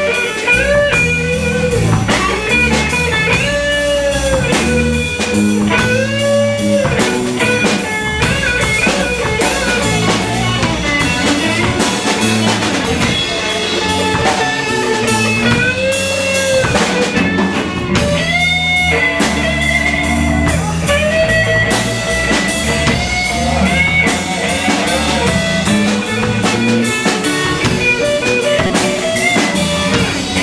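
Live blues band: a Stratocaster-style electric guitar plays a solo full of string bends that rise and fall in pitch, over a drum kit and a low bass line.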